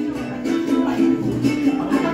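Mariachi strings, guitar and small guitar, strumming a steady, rhythmic dance accompaniment.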